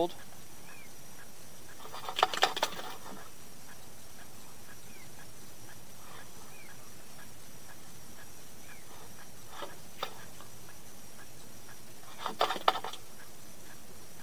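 Steady background hiss with two brief bursts of clicking and rattling, about two seconds in and again near the end, and a few faint short chirps.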